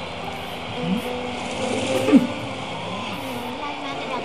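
Sustained musical tones from an anime soundtrack, with a couple of brief voice sounds about one and two seconds in.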